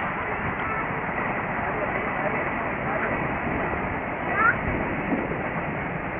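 Outdoor playground ambience through a tiny camcorder microphone: a steady rushing hiss of breeze and background noise, with distant voices of people. A short high chirp about four and a half seconds in.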